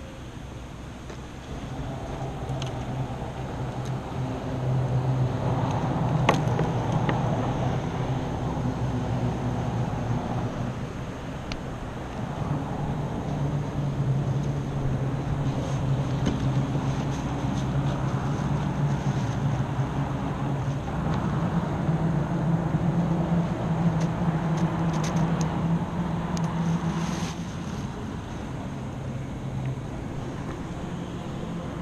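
An engine running steadily with a low hum, its pitch shifting only slightly. A sharp click comes about six seconds in, and a few lighter clicks come near the end.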